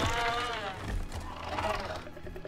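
Giant stick-insect-like film creature giving two drawn-out, wavering creaking calls, a long one first and a shorter one near the end, over a steady low rumble.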